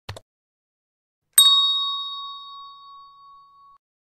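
A short mouse-click sound effect, then about a second later a single bright notification-bell ding that rings out and fades over a couple of seconds.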